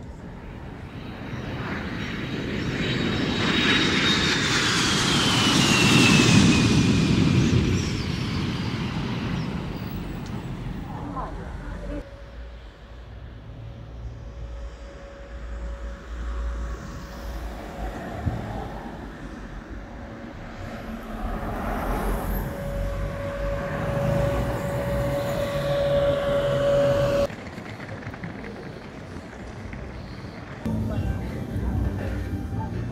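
A jet aircraft passing close by, the noise building, peaking about six seconds in and fading, with its engine whine falling in pitch as it goes past. Afterwards a steady hum continues until it cuts off suddenly near the end.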